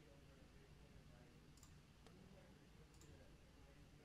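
Near silence with two faint computer mouse clicks, one about a second and a half in and one about three seconds in.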